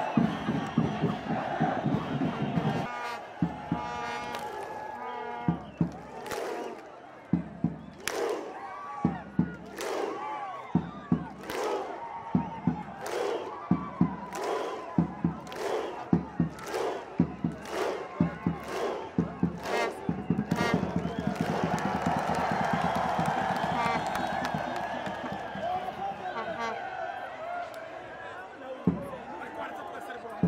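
A crowd of football players and fans doing a thunderclap (Viking clap): single loud unison claps, each followed by a short group shout. They start about 1.7 s apart and speed up to about two a second, then break into cheering. Crowd chanting and cheering come before the claps begin.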